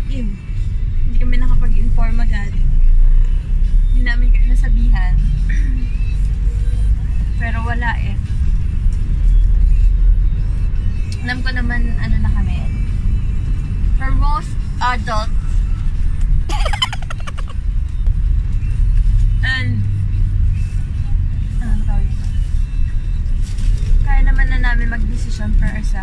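Steady low rumble of a car's engine and road noise heard inside the cabin, under background music.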